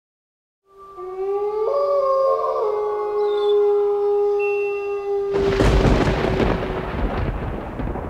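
Spooky intro sound effects: several eerie held tones layered together. About five seconds in comes a sudden loud, rumbling crash that carries on.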